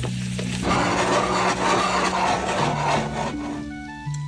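Plant-based butter sizzling as it melts and foams in a frying pan. The sizzle swells a little under a second in and fades toward the end.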